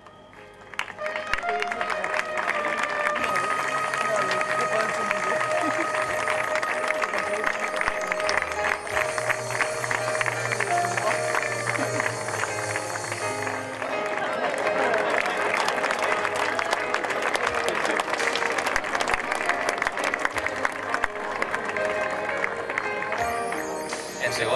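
Audience applause over music with long held melody notes, both starting about a second in and carrying on steadily.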